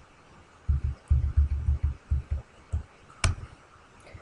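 A run of low, dull thumps over the first couple of seconds, then a single sharp click about three seconds in.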